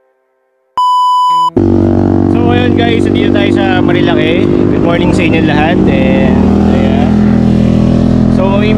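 A single steady electronic beep lasting under a second, about a second in, then a man talking loudly over a steady low hum.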